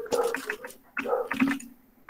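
A few clicks of computer keyboard keys as a word is typed, along with a low, wordless throaty vocal sound.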